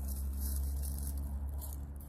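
Dry, dead vine stems rustling and crackling as they are pulled and cut with hand secateurs, over a steady low rumble that eases near the end.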